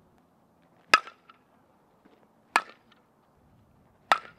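Softball bat hitting the ball twice, about a second and a half apart, each a sharp crack followed by a fainter tick.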